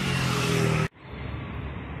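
A motor vehicle engine running loud and close, cut off abruptly about a second in. Then a steady, duller hum of street traffic.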